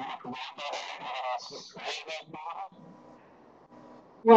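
Faint, indistinct human voice sounds over a web-conference audio line, broken up and wavering in pitch, which die away about two-thirds of the way in and leave a faint low hum.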